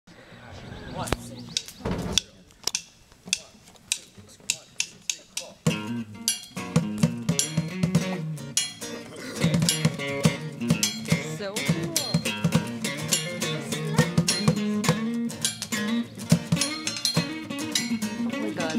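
A few sharp taps in a steady beat, then about six seconds in a small band of electric and acoustic guitars with saxophones comes in and plays a lively tune together.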